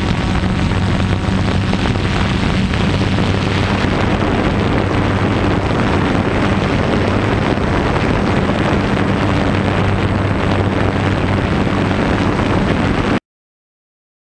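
Multirotor drone propellers whirring steadily with a low hum, mixed with rushing noise. The sound cuts off abruptly about a second before the end.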